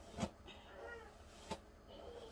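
Two light clicks, about a quarter-second in and again about a second and a half in, from a plastic hairbrush handled while hair is being tied up. Between them comes a faint, short call that wavers up and down in pitch.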